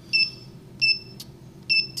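Handheld digital vane anemometer beeping as its buttons are pressed to change the velocity unit: three short, high beeps, evenly spaced about three-quarters of a second apart.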